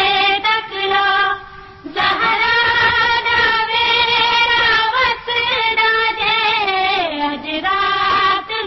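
A woman's voice singing a Punjabi noha, a Shia lament, in long, wavering held notes, with a short breath pause about two seconds in. It comes from an old 1970s recording, dull and narrow in its top end.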